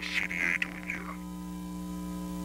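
Steady electrical hum or buzz made of several held tones, with a brief hiss over it in the first second.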